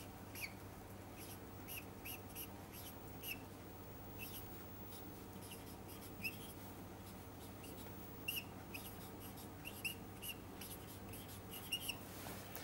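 Marker squeaking on a whiteboard in many short, irregular strokes while writing, faint, over a low steady hum.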